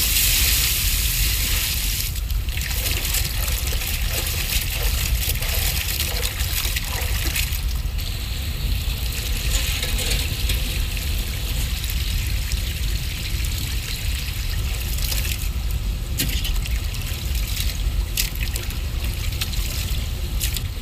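Water pouring and splashing over cut fish pieces in a metal bowl as they are washed, with a few short breaks, over a low hum.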